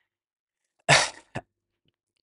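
One short, sharp burst of breath from a man, about a second in, in the manner of a single cough, followed by a faint click; silence otherwise.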